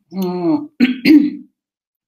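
A woman clearing her throat in two short voiced parts.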